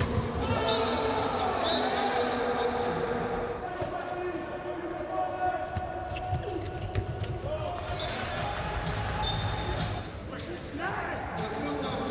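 A handball bouncing repeatedly on an indoor court, mixed with players' shouts and calls.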